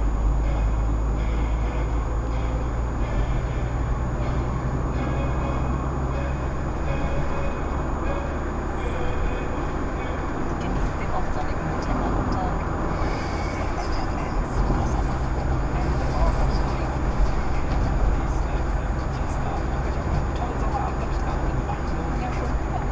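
Steady low rumble of tyre and engine noise inside a moving car, heard from a dashcam behind the windscreen, with indistinct talk underneath.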